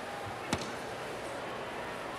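Steady splashing and hiss of an indoor pool during a swimming race, with one sharp knock about half a second in.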